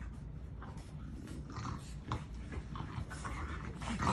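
French bulldogs play-fighting: dog vocal noises mixed with the scuffling of bodies and paws on a dog bed, in a string of short irregular sounds over a low rumble.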